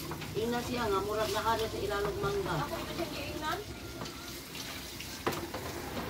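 Bananas frying in oil in a wok over a wood fire, a steady sizzle heard under a high-pitched voice talking for the first three seconds or so. A single sharp click about five seconds in.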